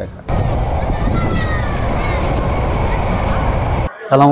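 A passenger train moving alongside the platform, heard from right beside the carriages: a loud, steady rumble and rush with a few faint high squealing tones that slide in pitch. It starts abruptly just after the beginning and cuts off just before the end.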